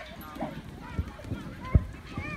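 Dull thumps of children's feet landing on an inflatable jump pillow, the loudest near the end, with children's voices around them.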